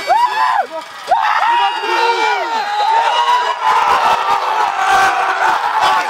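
Football players and the crowd shouting and whooping in celebration at the end of a won game, with rising-and-falling yells. The cheering thickens into a dense, steady crowd noise about halfway through.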